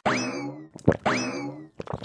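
Cartoon 'boing' sound effect played twice, about a second apart, each starting sharply and falling in pitch.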